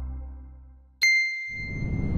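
Title-sequence sound design: a low drone fading out, then a single bright chime struck about a second in and left ringing, with a low rumble swelling beneath it near the end.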